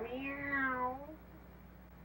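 A cat's meow sound effect: one drawn-out call about a second long, its pitch rising and then falling away.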